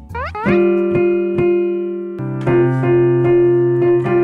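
Piano chords struck and left ringing: a quick rising glide opens, then one chord sounds and slowly fades before a second chord is struck about two seconds in.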